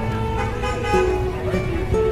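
Car horns honking in a drive-by birthday celebration, several held horn tones overlapping, over background music with plucked strings.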